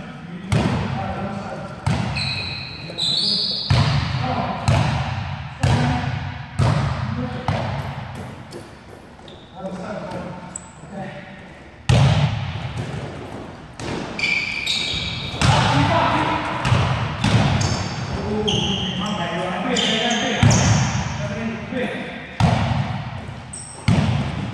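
A basketball being dribbled on a gym floor, each bounce a sharp thud echoing in the hall, at an uneven pace, with short high sneaker squeaks from players moving on the court.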